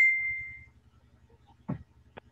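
A single high, bell-like ding that rings out and fades within about a second, followed by a faint soft knock near the end.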